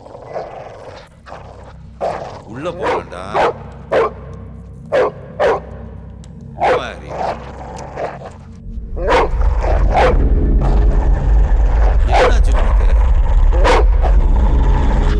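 A dog barking repeatedly, in short single barks about a second apart. From about two-thirds of the way in, a loud low rumble swells up beneath the barks and holds.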